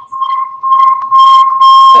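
Audio feedback on an open video call with many microphones unmuted: a steady high-pitched whine, broken by two very loud, harsh bursts in the second half.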